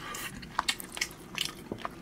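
A person chewing soft pressed pork head meat and pork skin close to the microphone: irregular small wet clicks and smacks.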